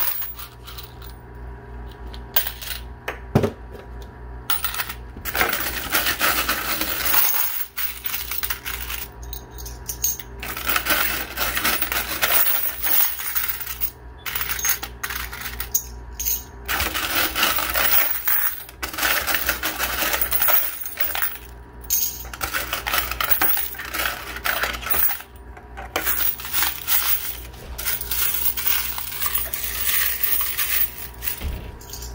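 Handfuls of quarters being scooped out of a coin pusher machine's payout tray and into a basket, clinking and jingling in dense stretches with short pauses between them. A steady low hum runs underneath.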